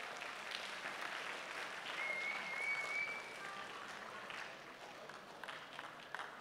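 An audience of students applauding, swelling a little around two to three seconds in and thinning toward the end. A thin high tone lasts about a second in the middle.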